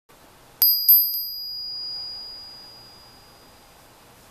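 Small gold-coloured metal hand bell struck three times in quick succession, starting about half a second in. It then rings on with a high, clear tone that fades away over about two seconds.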